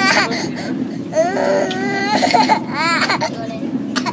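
A toddler crying, wailing in several bouts whose pitch arches up and down.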